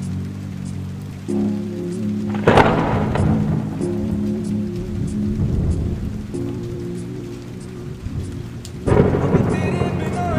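Steady rain with two thunderclaps, one about two and a half seconds in and one near the end, each coming in suddenly and then fading away, over a slow lofi instrumental of held low chords.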